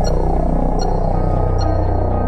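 Suspenseful film score: a steady low throbbing drone under a short, high tick that repeats a little more than once a second.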